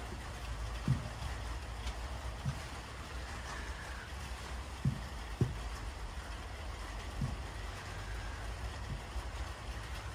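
Steady low outdoor background rumble with several faint, soft knocks scattered through it.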